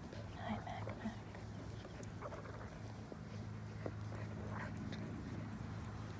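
Small dogs making faint, brief whimpering sounds while being petted, over a steady low hum.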